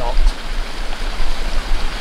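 Steady rush of fast-flowing river water, with a low rumble underneath.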